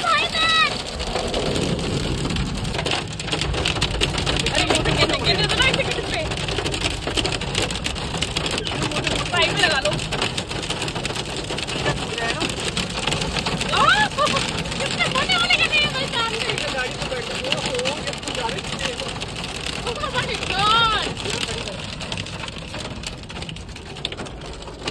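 Hail and heavy rain drumming on a car's roof and windscreen, heard from inside the car as a dense, continuous clatter of small impacts. Voices call out now and then over it.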